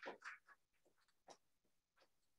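Near silence: room tone, with a few faint short ticks in the first half-second and one more about a second later.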